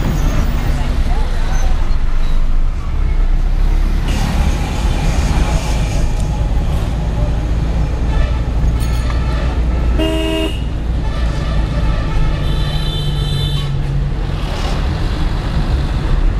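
Steady engine and road rumble heard from inside a car in heavy traffic, with vehicle horns honking: a short blast about ten seconds in and a longer one a couple of seconds later.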